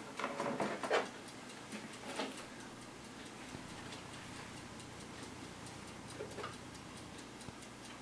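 Mechanical clock ticking faintly and steadily while it is held, with a few handling knocks and rustles in the first couple of seconds.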